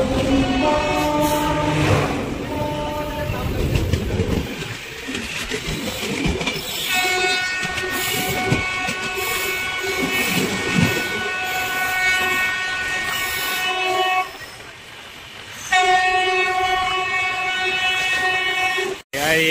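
Train horn sounding over the running noise and wheel clatter of a moving passenger train: two short blasts at the start, then one long blast of about seven seconds, a short break, and another long blast near the end.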